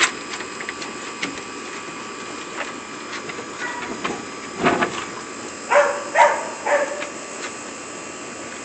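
Two playing Labrador-mix dogs making a few short vocal sounds over a steady hiss: one about halfway through, then two or three close together near six seconds.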